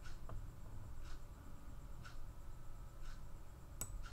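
Faint scratching of a colored pencil on drawing paper: short, soft strokes about once a second over a low room hum.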